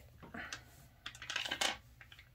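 Small polished stones clicking and scraping against each other and the tabletop as they are slid by hand into a row, in a few faint, irregular taps.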